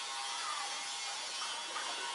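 Steady background hiss with no distinct event: an even, hissing ambient noise with a faint steady tone under it.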